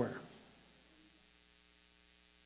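Faint, steady electrical mains hum made of several even, unchanging tones, left audible once the last spoken word dies away just after the start.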